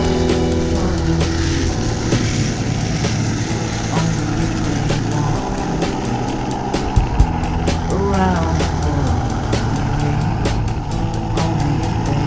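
Music soundtrack over the steady rush of skateboard wheels rolling fast down an asphalt road, with wind noise. About eight seconds in, a voice briefly exclaims "wow."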